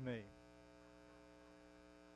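Faint, steady electrical mains hum, heard in a pause after a man's voice ends a word at the very start.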